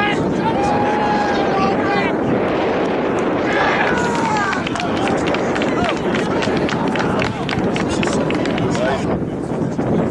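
Outdoor sports-field ambience: a steady rush of wind on the microphone with distant shouts and calls of players and spectators, loudest at the start and again a few seconds in. Through the second half a rapid patter of small clicks sits over it.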